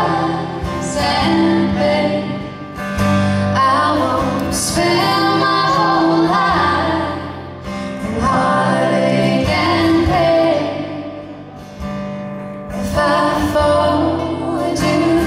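Folk band playing live: female voices singing in harmony over acoustic guitars, the phrases separated by brief lulls.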